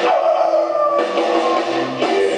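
Rockabilly band playing live, with acoustic guitar, drums and voice. About a second in the sound changes abruptly, and low bass notes step along underneath.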